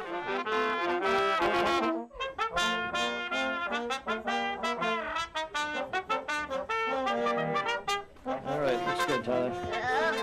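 A small family brass band, with trumpets and tubas, playing a tune in sustained chords. There is a brief break about two seconds in, after which the playing carries on.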